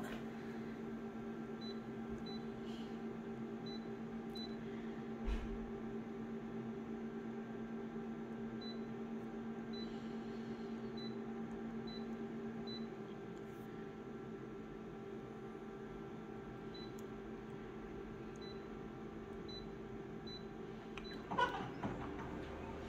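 Colour office copier running a copy job, humming steadily with its fans and motors, with a single click about five seconds in; one low tone in the hum drops out about thirteen seconds in.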